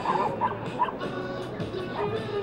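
A dog barking a few times in the first second, over background music.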